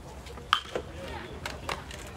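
A single sharp crack with a brief metallic ping about half a second in: an aluminium baseball bat striking a pitched ball. A few fainter knocks follow.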